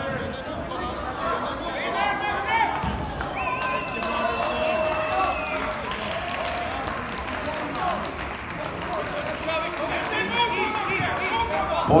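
Many voices of spectators and coaches talking and calling out over one another in a large, echoing sports hall during a grappling match, with a steady high tone held for about two seconds near the middle.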